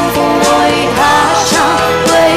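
A woman singing a Mandarin pop song over a full band backing with a steady drum beat.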